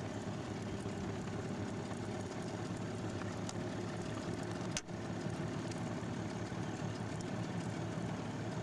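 Steady hum of a boat's outboard motor idling, with a brief dropout about five seconds in.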